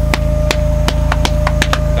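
A quick, irregular run of sharp clicks or taps, about ten a second, over a steady low hum and a thin held tone.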